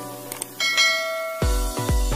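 A click and then a bell chime ring out over electronic music as the beat drops away; the kick-drum beat comes back about one and a half seconds in.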